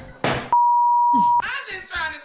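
A single steady electronic beep, just under a second long, starting about half a second in, with all other sound cut out beneath it: a censor bleep dubbed over a word. Speech and laughter sit either side of it.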